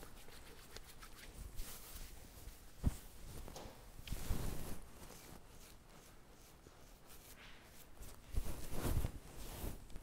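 Faint rustling of palms rubbing beard butter together and fingers working it into a long beard and mustache, with one sharp tick about three seconds in and a little more rustling near the middle and toward the end.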